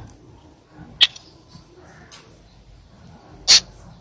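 A pause in speech with low room noise, broken by one sharp click about a second in and a short hiss near the end.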